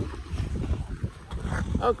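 Wind buffeting a phone microphone while ice skating, with the skate blades scraping and gliding on the ice.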